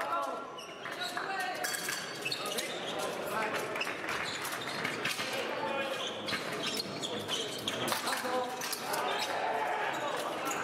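Épée fencers' feet stamping and thudding on the piste with sharp clicks of blade contact, over voices echoing in a large sports hall.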